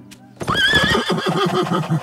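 A cartoon unicorn whinnying. The single call starts about half a second in and runs until near the end.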